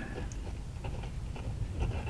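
Extra-fine steel fountain pen nib writing on paper: faint, irregular scratching strokes as the letters are formed.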